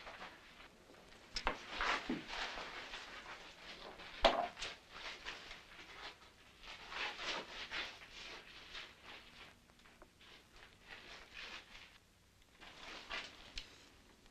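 Quiet rustling and handling sounds, with sharp clicks about a second and a half in and again about four seconds in, and soft scrapes between them.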